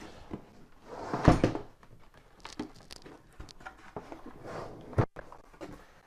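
Cardboard product box being handled and its lid opened: a louder scuff about a second in, light rubs and taps, and a sharp knock near the end.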